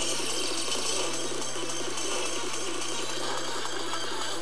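Audio played back hundreds of times faster than normal, squeezed into a dense, chattering hiss over a steady low hum.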